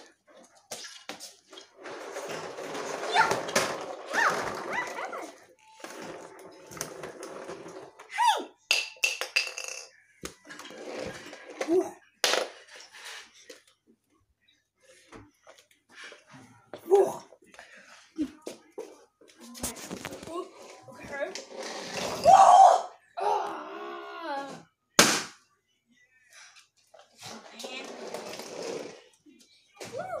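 A person's voice in short, broken bursts mixed with rustling and handling noises, with a few sharp knocks, one about twelve seconds in and a loud one near twenty-five seconds.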